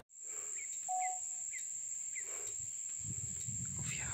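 Outdoor ambience: a steady, high-pitched insect trill, with a few short bird chirps about every half second in the first half. A low rumble comes in near the end.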